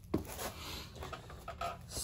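A sharp knock just after the start, then faint shuffling and rustling as a person steps over and sits down on a wooden chair.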